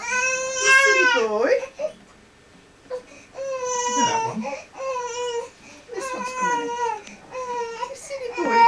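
A young baby crying: one long wail at the start, a short lull, then a string of shorter cries.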